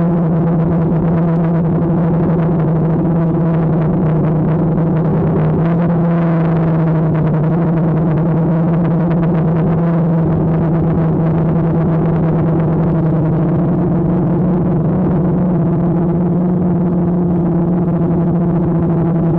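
DJI Phantom quadcopter's motors and propellers hovering: a steady, loud hum with a fixed pitch and overtones, wavering slightly as the craft turns.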